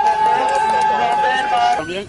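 A pack of 1/10-scale electric RC touring cars racing, their motors giving a steady high whine in several pitches at once.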